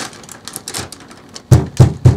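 Hands patting and pressing a lump of polymer clay flat on parchment paper over a table: faint light taps, then near the end a quick run of firm thumps, about four a second.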